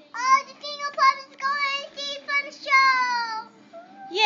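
A toddler singing in a high voice: a string of short sung syllables, ending on a longer note that slides down.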